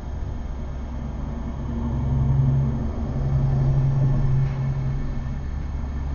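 A low, steady mechanical hum, like a motor or engine running, growing louder about two seconds in.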